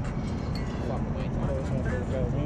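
Steady low outdoor background rumble, with faint voices coming and going over it.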